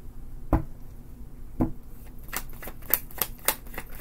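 Tarot deck shuffled in the hands: two single card taps, then from about halfway a quick run of flicking card clicks, about five a second.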